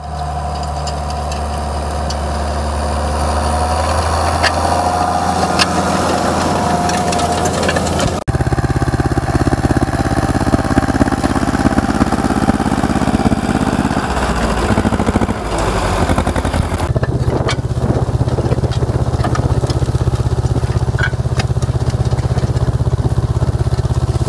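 Farm tractor diesel engine running steadily under load while tilling. About eight seconds in, the sound cuts to a closer, louder engine with a fast, even chugging: the Ursus pulling its disc harrow.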